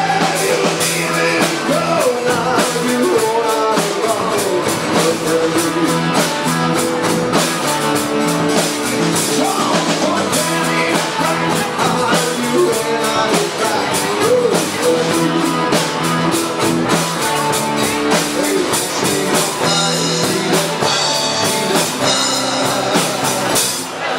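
Live rock band playing: drum kit with cymbals, electric guitar, bass guitar and acoustic guitar, with a man singing lead.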